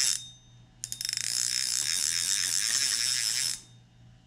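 A short sharp burst, then a rapid, even ratchet-like clicking that runs for nearly three seconds and cuts off shortly before the end.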